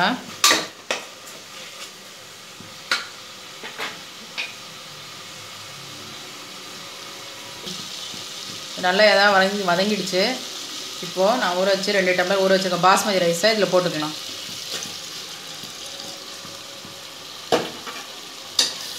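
Metal ladle knocking and scraping against the inside of a pressure cooker while stirring prawn masala, over a faint steady sizzle of the masala frying. A few sharp knocks come in the first few seconds and one more near the end.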